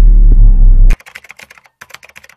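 A loud, deep droning intro-music sting cuts off abruptly about a second in. It is followed by a quieter run of rapid keyboard-typing clicks, a typing sound effect laid over text being typed out.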